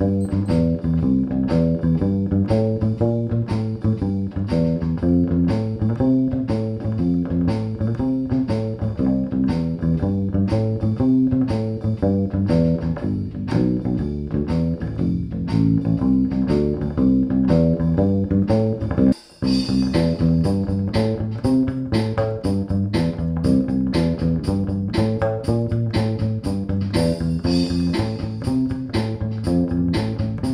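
Fretted bass ukulele playing a bass line in a swung rhythm over a drum machine beat. After a brief break about two-thirds of the way in, the same bass and drum machine go on with a straight, even beat.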